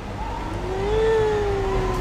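A distraught young boy's long wailing cry, rising in pitch and then slowly falling away, over the low rumble of a car.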